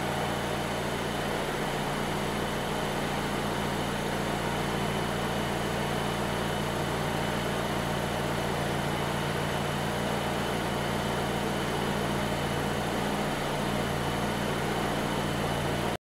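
2020 Volvo XC40's turbocharged four-cylinder engine idling steadily, with a faint steady high tone above it.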